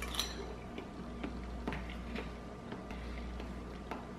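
A person chewing a mouthful of chunky canned soup, giving faint, scattered mouth clicks about every half second over a low steady hum.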